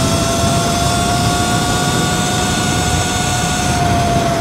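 Sur-Ron electric dirt bike accelerating hard at highway speed: a steady high whine from its electric motor and BAC4000 controller over loud wind rush.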